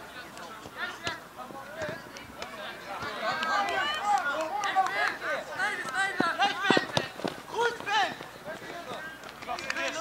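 Several voices shouting and calling over each other during a football match, growing louder and denser about three seconds in, with a few sharp thuds in the middle.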